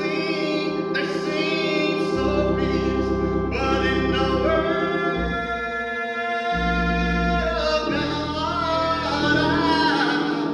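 A men's choir singing a gospel song, accompanied by a church organ holding sustained chords and bass notes that change every second or two.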